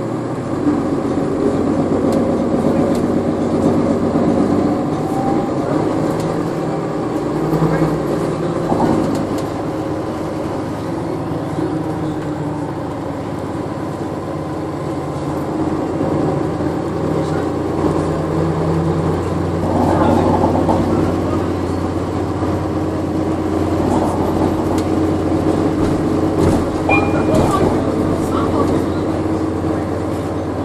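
Cabin sound of a 2014 NovaBus LFS hybrid bus under way: its Cummins ISL9 diesel and Allison EP40 hybrid drive make a steady low drone whose pitch shifts now and then, with passengers' voices in the background.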